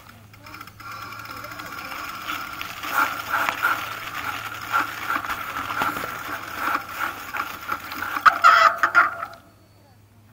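Bicycle being ridden over rough, muddy ground, rattling and clicking with a high squeal, which cuts off suddenly near the end.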